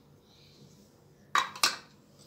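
Two sharp clinks, about a third of a second apart, of a kitchen utensil knocking against a glass mixing bowl. Before them, only faint handling sounds.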